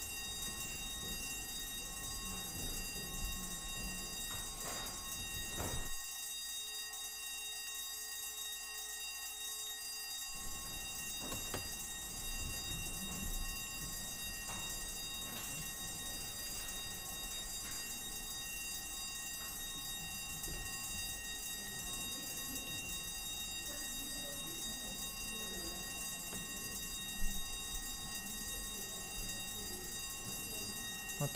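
Electric division bells ringing continuously, a steady high-pitched ring, signalling that a division vote has been called. There are a few faint knocks.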